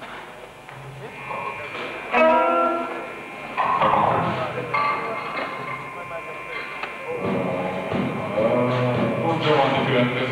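A rock band on stage, heard through a worn, muffled VHS recording: a voice over the PA mixed with held instrument tones and a few thumps, more like talk and scattered playing than a song in full swing.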